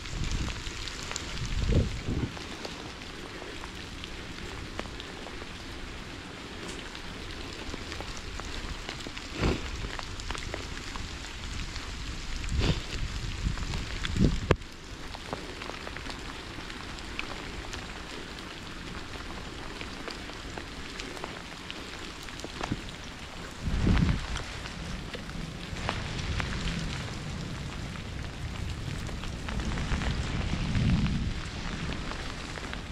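Rain pattering on a cyclist and his camera during a ride on a wet towpath: a steady hiss broken by about five short low thumps.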